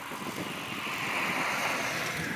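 A car passing on the road, its tyre and road noise swelling to a peak about a second in and then fading.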